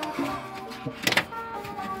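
Background music with steady held notes, and a brief sharp click about a second in.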